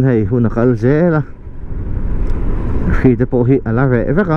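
A person talking over the steady running noise of a motorcycle on the move, with wind noise; the talk pauses for about two seconds in the middle, leaving only the motorcycle and wind noise.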